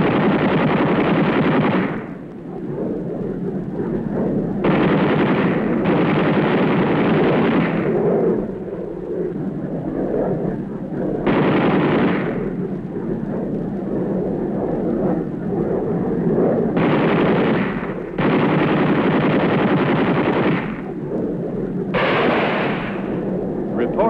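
Aircraft machine guns firing in strafing bursts, about five bursts of one to four seconds each, with a lower rumble between them.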